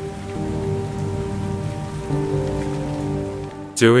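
Steady rain falling, under soft music of long held notes that shift chord a third of a second in and again about halfway through.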